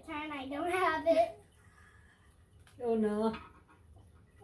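Voice sounds with no recognisable words: one vocal sound about a second and a half long at the start, and a shorter one about three seconds in.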